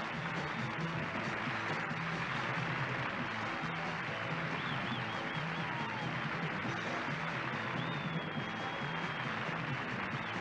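Live rock-and-roll band playing an instrumental stretch with a steady beat. An audience cheers and screams over it, with a few high screams that rise and fall.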